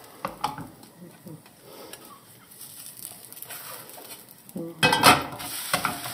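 Slotted spatula scraping and tapping against a frying pan as a pancake is pushed around and turned, with faint sizzling of the batter in the hot pan. A louder clatter of the spatula on the pan comes about five seconds in.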